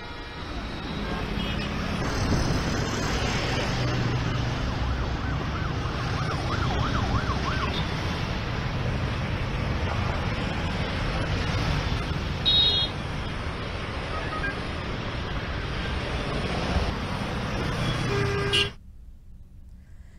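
Steady road traffic noise with motorbikes and cars passing, a faint wavering tone for a couple of seconds about a third of the way in, and a short horn toot about twelve seconds in. The sound cuts off suddenly shortly before the end.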